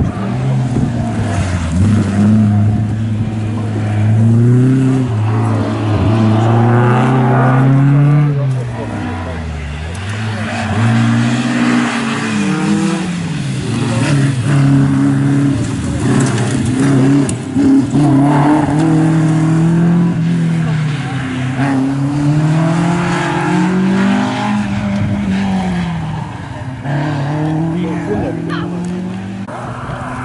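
Rally car engines revving hard through a tight bend and accelerating away, one car after another, the pitch climbing and dropping back repeatedly with gear changes and lifts off the throttle.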